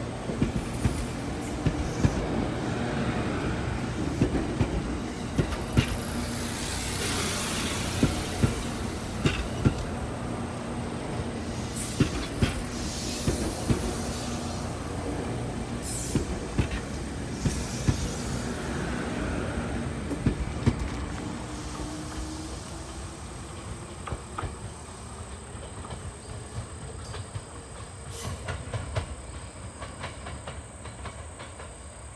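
JR Kyushu 787 series electric express train departing, its cars rolling past close by with wheels clicking over rail joints amid a steady rumble. The sound fades over the last several seconds as the train draws away.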